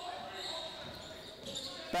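Live court sound of a basketball game in a large sports hall: the ball bouncing on the hardwood floor, with faint voices in the echoing hall.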